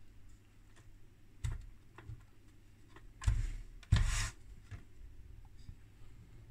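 Light handling noise: a couple of faint clicks, then two short rustling scrapes about three and four seconds in, as the open oscilloscope chassis is handled.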